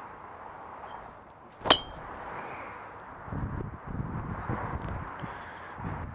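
A golf driver striking a teed ball: one sharp metallic crack with a short ringing ping, a little under two seconds in.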